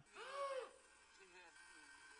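A person's voice: one short, quiet vocal sound that rises and falls in pitch, like a drawn-out "ooh", then faint murmured voice.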